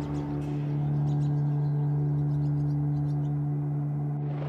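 Background score music: a sustained, deep, gong-like drone held on one steady low tone.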